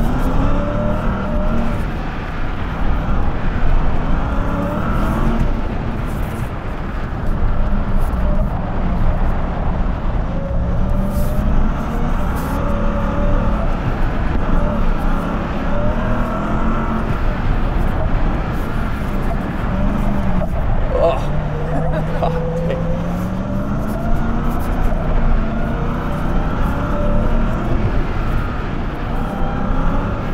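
Ram TRX's supercharged 6.2-litre Hemi V8 revving up and easing off again and again as the truck accelerates and slows on a dirt rallycross course, over steady tyre and gravel noise with occasional clicks.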